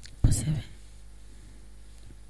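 A brief breathy voice sound into a microphone about a quarter second in, lasting about half a second, then a pause with only low room tone.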